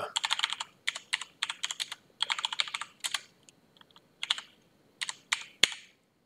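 Typing on a computer keyboard: quick runs of key clicks with short pauses between them.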